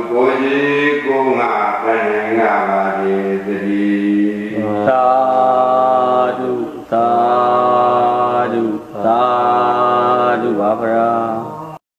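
Buddhist paritta chanting by a monk: a steady recitation, then three long drawn-out held phrases, ending abruptly.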